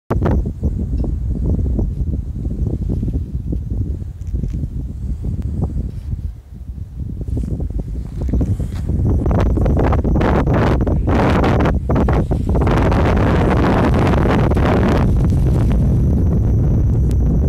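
Strong wind buffeting the microphone: gusty and uneven at first, then a steady, heavier rush from about nine seconds in.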